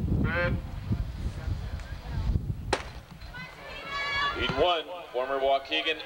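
Rumble on the camcorder microphone with a short shout early on, then a single sharp crack of a starting pistol about three seconds in, starting a 200 m sprint heat. Voices over the stadium PA follow.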